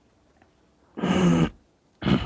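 A man's loud, strained vocal cry heard over a video call, lasting about half a second from about a second in, then breaking out again at the very end.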